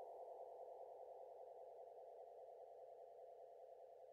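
Near silence: a faint, steady tone from the edited soundtrack fading away.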